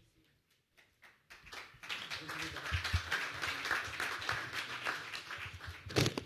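Audience applause: many hands clapping, starting about a second and a half in, swelling, then holding to the end. A couple of low thumps sound near the middle.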